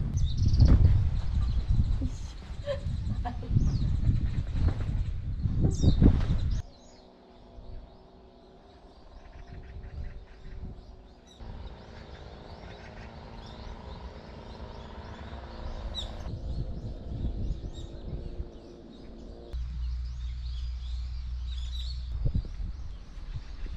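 Outdoor ambience with a few short bird chirps. A loud low rumble, like wind on the microphone, fills the first six seconds. After that the sound drops and changes abruptly several times.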